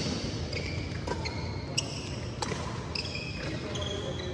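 Badminton rally: a few sharp racket strikes on the shuttlecock, with short high squeaks of shoes on the court floor, in a large echoing hall.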